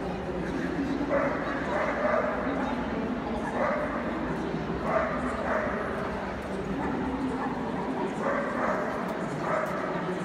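Dogs barking and yapping in short bursts, about a second in, around the middle and twice near the end, over a steady murmur of crowd voices.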